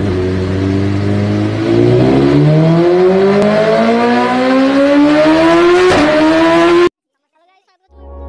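Engine revving sound effect with a pitch that rises steadily over several seconds and a brief click near the top. It cuts off suddenly about seven seconds in.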